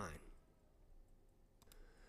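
Near silence, with two or three faint computer mouse clicks about one and a half seconds in.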